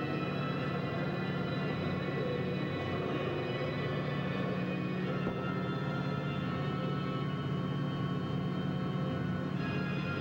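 Eerie, slow soundtrack music of held, steady tones over a constant low drone, with no distinct individual calls or knocks standing out.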